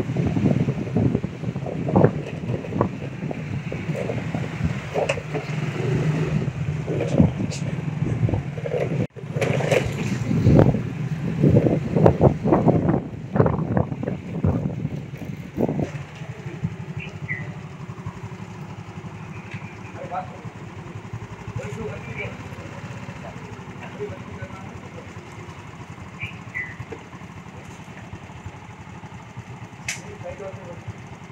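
Indistinct voices of several people talking over a steady low hum, busy and loud for the first sixteen seconds or so, then quieter with only scattered faint sounds.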